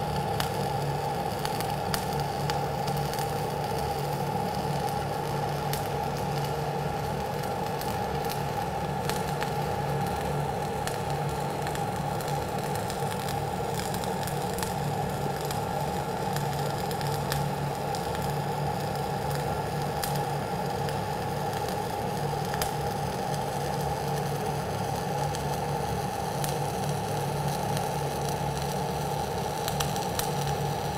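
Dual shield (gas-shielded flux core) welding arc burning ESAB 7100 wire, crackling steadily and without a break. The arc is popping and shaking at the end of the wire rather than giving a smooth sizzle, which the welder puts down to wire that has probably absorbed moisture.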